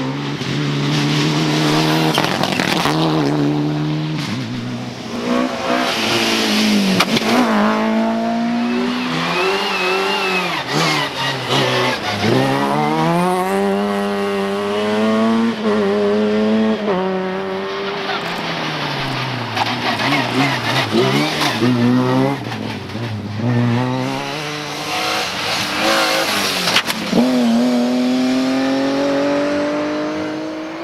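Rally cars at full throttle on a tarmac stage, one after another, engines revving hard with the pitch climbing and dropping back at each gear change and lift off the throttle.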